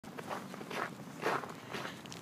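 Footsteps of a person walking at an easy pace, four steps about two a second.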